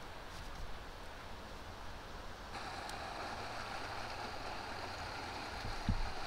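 Steady outdoor background noise, a hiss with a low rumble under it, which gets brighter about two and a half seconds in; a short knock near the end.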